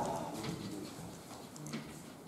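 Chalk on a blackboard: faint irregular taps and scrapes as a formula is written.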